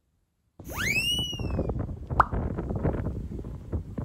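Wind buffeting the microphone, a dense low rumble that starts about half a second in. It opens with a rising whistle-like tone that levels off and slides slightly down, and there is one sharp click about two seconds in.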